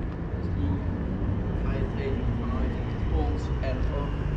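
Night street ambience under an overpass: a steady low rumble of city traffic, with passers-by's voices talking, growing clearer in the second half.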